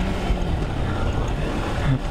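Kawasaki Versys X300 motorcycle riding steadily over a dirt trail: engine running at cruising speed under steady wind rush on the microphone, with tyres on loose gravel.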